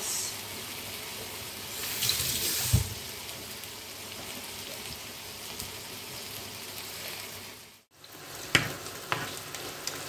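Salmon fillets frying in hot oil, a steady sizzle that swells louder for about a second, two seconds in, and ends in a knock. Near the end, after a brief break, come a couple of sharp clicks of a utensil against a pan.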